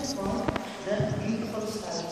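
A person talking inside a cave, with one sharp knock about halfway through.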